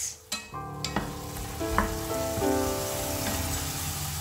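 Mushrooms sizzling in a soy sauce and mirin sauce in a hot stainless-steel frying pan, a steady frying hiss, with soft held background music chords underneath.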